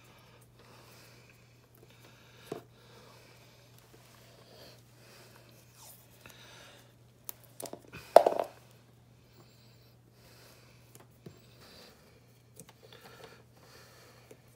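Hands taping a string onto a refrigerator's plastic water line: small rustles and crinkles of tape and line, with one louder brief noise about eight seconds in. A faint steady low hum runs underneath.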